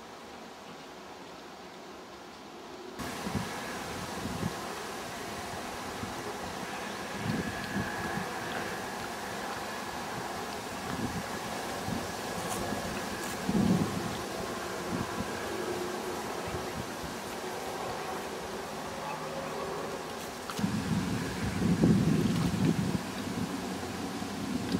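Wind buffeting the microphone in uneven gusts, stronger near the end, after a few seconds of faint steady hiss at the start.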